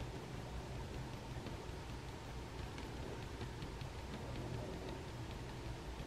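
Faint pencil strokes on paper: a run of short, quick scratches as fur is sketched in, over a low steady room hum.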